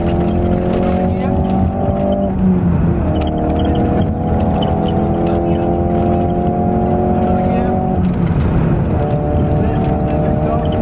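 Ford Focus RS Mk3's 2.3-litre turbocharged four-cylinder, heard from inside the cabin, accelerating up through the gears. The engine note climbs steadily, with a gear change about two and a half seconds in and another around eight to nine seconds in.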